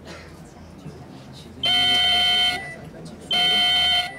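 Two steady electronic buzzer tones over a quiet committee room: the first lasts about a second, and the second starts about three seconds in and is slightly shorter.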